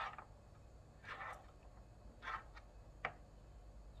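Soft, scratchy rustles of dry sphagnum moss being packed by hand around an orchid's roots in a small plastic pot: a few brief bursts, with a sharp click about three seconds in.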